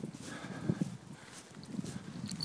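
Soft, irregular footsteps and rustling through grass as the person holding the camera moves forward.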